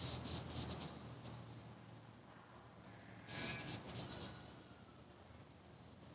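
A small songbird singing: two short phrases, one at the start and one about three seconds in, each a quick run of high, thin notes stepping down in pitch.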